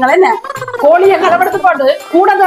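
Speech only: a woman talking loudly and fast in an animated argument.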